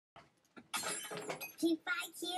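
An indistinct girl's voice close to the microphone, mixed with a bright clattering noise, starting just under a second in after a silent opening.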